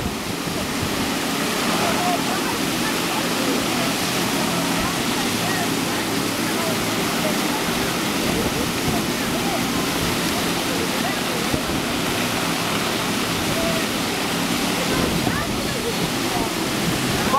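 Steady rush of water pumped at speed up the sloped surface of an artificial sheet-wave surf ride, breaking into white water.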